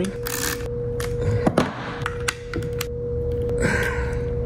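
Scattered metallic clicks and knocks of a hand wrench working the bolts on the battery terminals as the power cable lugs are fastened down, over a steady faint background tone.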